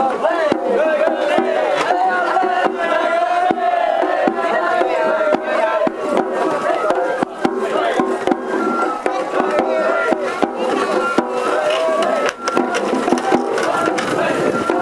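Japanese festival float music: taiko drums struck again and again on the float while a wavering high melody runs over them, with crowd voices around.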